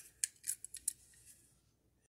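About five light, sharp clicks and taps in the first second as two die-cast toy cars are handled and turned in the fingers.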